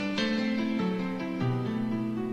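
Slow piano accompaniment to a ballad: sustained chords, each note held steady and changing about every half second, with no singing over it.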